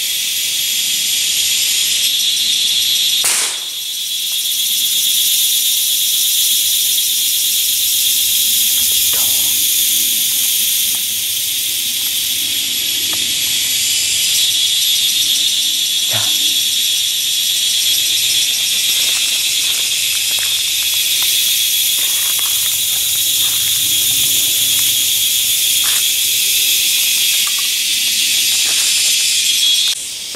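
A steady, high-pitched drone from a chorus of forest insects fills the air. A few faint snaps and rustles of twigs and leaf litter break in now and then, mostly in the second half.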